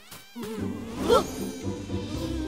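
Cartoon soundtrack: background music with a wavering, buzzing sound effect that starts about half a second in.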